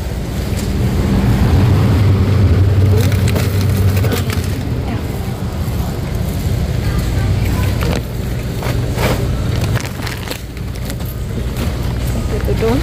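Metal wire shopping cart rolling over a concrete store floor: a steady low rumble from the wheels with scattered rattles and clicks from the basket.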